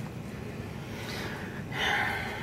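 A man's breath: a short, noisy intake of air near the end, over low room noise.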